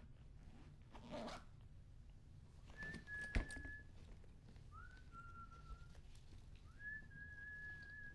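Faint whistling in three long, steady notes, each about a second long: high, then lower, then high again. The second and third notes slide up briefly into their pitch. A single thump comes about a third of the way in, and a short rustle about a second in.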